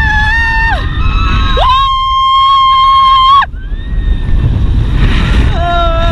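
A rider screaming during a fairground ride: long, steady-pitched screams, the highest held for about two seconds, with another starting near the end. Wind buffets the microphone throughout.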